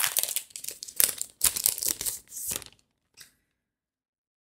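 Thin clear plastic retail bag crinkling and rustling in the hands as it is opened and a passport-size clear folder is pulled out. The rustling comes in a few uneven bursts and stops about two and a half seconds in.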